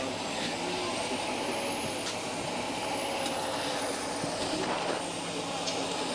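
Military vehicles' diesel engines running steadily, with a faint high whine over the engine hum.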